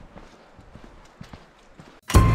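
Footsteps: a quick, uneven series of faint knocks, several a second.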